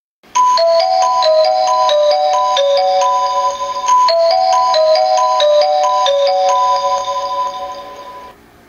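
Japanese railway station departure melody (hassha melody): a short electronic chime tune of stepping, mostly falling bell-like notes. The phrase plays through twice and fades out near the end.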